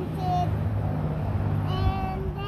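A young girl's high-pitched sing-song voice with no words: two short notes at the start and a held note near the end, over a steady low rumble.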